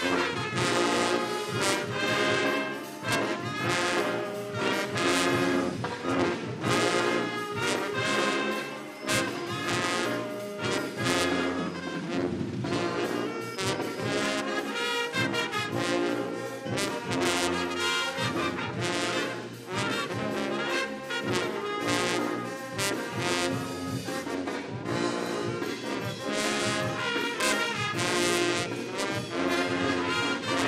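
High school concert band playing a song, led by brass (sousaphones, trombones and baritones), with a drum kit keeping a steady beat.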